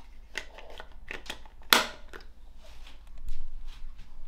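Small plastic clicks and rustling as a part is pressed back onto a Boundary door contact sensor, with one sharp snap about one and a half seconds in, then more handling noise near the end.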